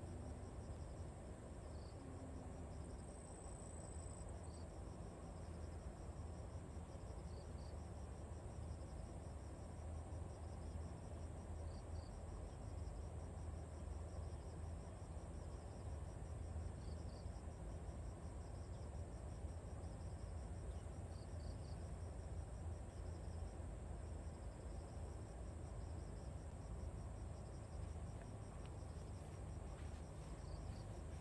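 Insects chirring steadily in a continuous high-pitched trill, with a short double chirp every four or five seconds, over a low steady rumble.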